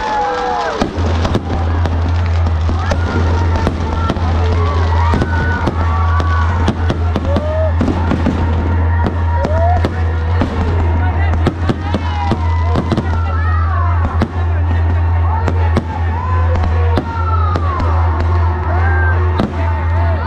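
Fireworks bursting and crackling in quick, irregular succession over a large crowd's shouts and whistles, with a steady low drone setting in about a second in.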